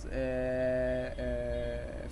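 A man's drawn-out hesitation filler, a steady held 'aaah' at one pitch, twice in a row with a short break, while he searches for the next word.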